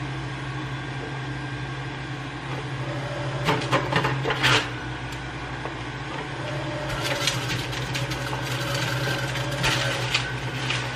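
Centrifugal juicer (Crux Artisan Series) with its motor running in a steady hum while it shreds fruit pushed down the feed chute. The grinding gets louder in short stretches about three and a half seconds in and again from about seven seconds on.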